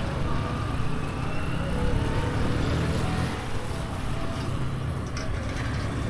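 A motor vehicle engine running steadily, with road and wind noise.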